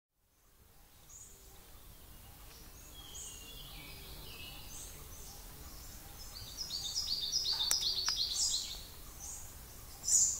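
Forest ambience fading in, with several birds calling: short high chirps throughout, descending whistled notes about three seconds in, and a rapid run of stepped high notes from about six and a half seconds, the loudest part. Two sharp clicks sound near the end of that run.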